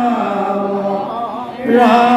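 A group of men chanting Assamese devotional naam (naam kirtan) together into microphones, holding long sustained notes. The chant dips about a second and a half in and the voices come back strongly near the end.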